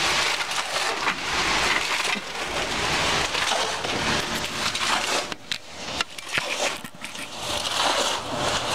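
Wet concrete sliding down a concrete truck's chute and being scraped along with a concrete rake: a steady gritty rush that thins out and turns patchy about five seconds in.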